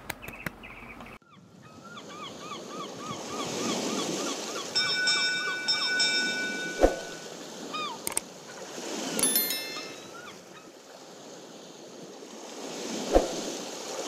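Sound effects under a channel logo: ocean waves washing in slow swells, joined by a quick run of short chirps, then held chime tones, a few sharp clicks and a bell-like ding around the point where a Subscribe button and bell are clicked.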